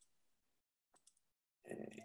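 Near silence with a few faint computer clicks, then near the end a short, louder voice sound from a man, too brief to form words.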